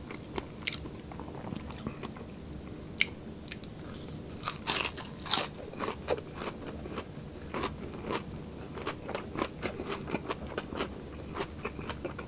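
Close-miked chewing of crispy deep-fried pork, a run of sharp crunches and wet mouth clicks, loudest about four to five seconds in.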